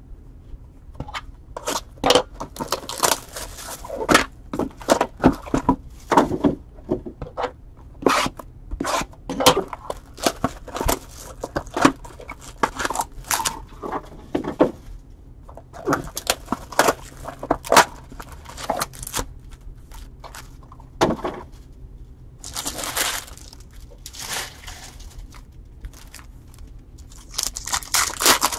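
Trading cards and their packs being handled: a busy run of sharp clicks and snaps as cards are flicked through. Twice, about 22 seconds in and again near the end, there is a longer crinkling of the pack wrappers.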